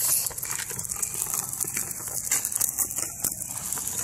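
Child's push tricycle rolling along an asphalt path: a quick, irregular rattling and clicking from its plastic wheels and frame.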